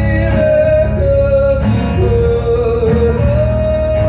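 A man's voice holds long sung notes over a strummed acoustic guitar. The sung note steps down partway through and rises to a long held note near the end, while the strums fall about every second and a half.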